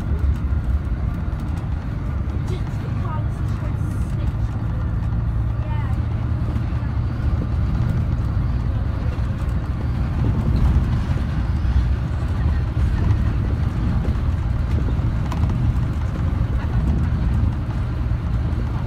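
Cabin noise of a 2011 VDL Bova Futura coach on the move: a steady low drone of engine and road rumble, with tyre noise over it.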